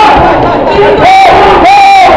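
Ringside spectators shouting loudly at a kickboxing fight, with two long, held yells in the second half.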